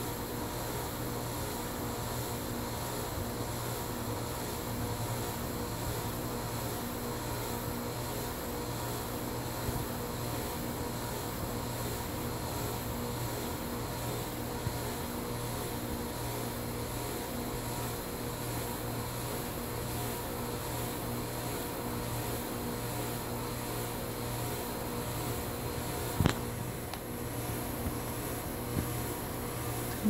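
Crompton Greaves High Breeze ceiling fan coasting through a long spin-down with its blades turning steadily over a low, even hum. The long coast is a sign of bearings in pristine condition. There is one sharp click about 26 seconds in.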